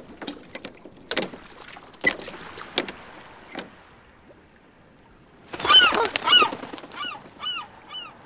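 Wooden oars knocking and creaking against a small rowboat as it is rowed, in short separate strokes through the first half. About halfway through comes the loudest part: a run of short honking squawks, each rising then falling in pitch, that goes on until near the end.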